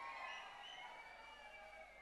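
Faint, drawn-out high whistles, several at once, slowly falling in pitch, over low hall noise: an audience whistling.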